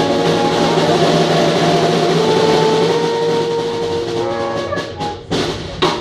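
A live band of saxophone, trombone and accordion playing long held notes that close a tune, with two sharp percussion hits near the end as the piece finishes.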